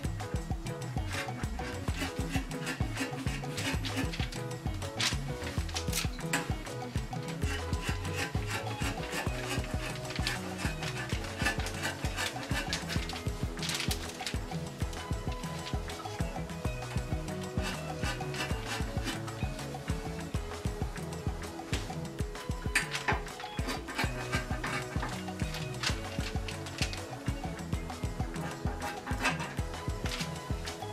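Background music runs throughout, over the snipping and rasp of scissors cutting through stretchy knit fabric, with scattered sharp clicks.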